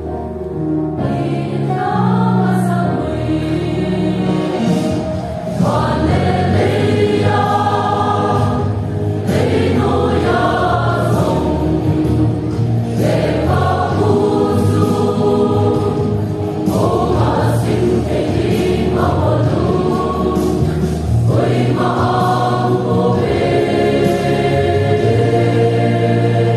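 A large mixed choir of men and women singing a sacred choral song in parts, phrase after phrase with held notes.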